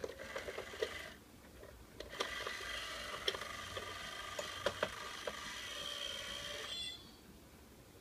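Small battery motor and plastic gears of an Itazura cat coin bank whirring, with clicks. A short run of clicking comes in the first second, then a longer whir starts about two seconds in and cuts off suddenly near the end.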